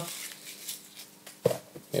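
Faint steady buzz from a studio strip light that is playing up, with a few faint ticks of hands handling a small wooden box; a brief voice comes in near the end.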